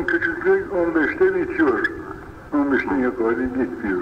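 Speech only: a man's voice talking, with a short pause about halfway through.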